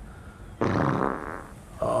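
A long, loud, buzzy fart, beginning about half a second in and lasting nearly a second.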